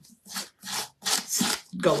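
Sandpaper rubbed back and forth over a new IOD stamp in several short strokes, about three a second, scuffing its surface so the ink will adhere.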